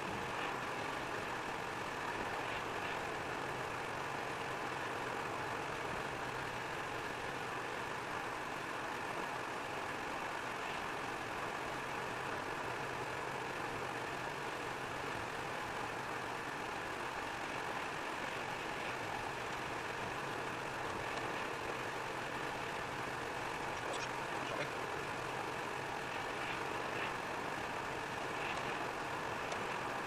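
Steady car cabin noise at about 90 km/h on wet asphalt: tyre and engine noise heard from inside the car, even throughout, with a few faint ticks near the end.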